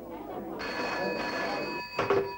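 Desk telephone's bell ringing for about a second, starting about half a second in.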